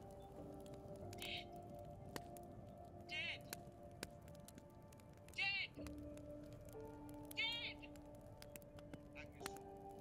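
Faint soundtrack music of soft held notes that shift every second or two, with four short high-pitched voice-like bursts, the loudest about halfway through and again a couple of seconds later.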